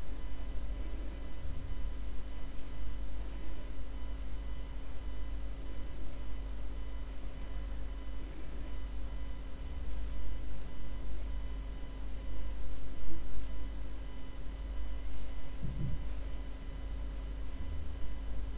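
Steady low hum and rumble with a faint high electrical whine, and a few faint ticks scattered through it; no distinct sound event.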